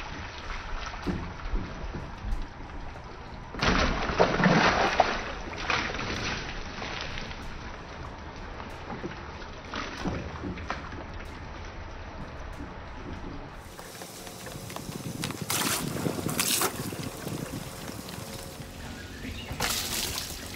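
Water poured from a plastic bucket over a car's body, splashing onto the car and the ground in several separate dousings, with background music in the first part.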